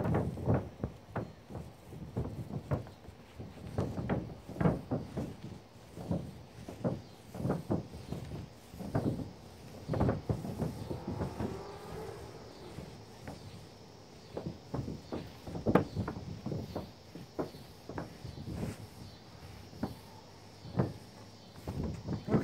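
Irregular knocks and thumps, about one or two a second, from a mobile home roof as roof coating is rolled on with a long-handled paint roller pushed and pulled over it, along with footsteps on the roof.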